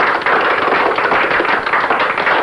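Audience applause: a steady, loud patter of many hands clapping right after a song ends.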